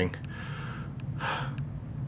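A man's audible breath in a pause between sentences: a breathy inhale, then a short breath out, with a small click about a second in.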